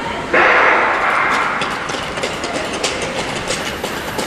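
Starting shot for a speed-skating race: a sudden bang about a third of a second in that rings on in a large hall. It is followed by the skater's blades striking and scraping the ice in repeated strokes that come closer together.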